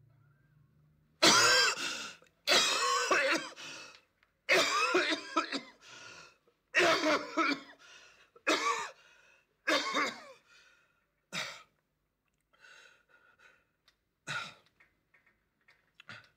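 A man's coughing fit: a run of about seven harsh, loud coughs, then weaker, fainter coughs toward the end.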